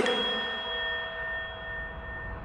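A single bell-like chime in a Haryanvi rap song, struck once as the beat drops out and left ringing, slowly fading.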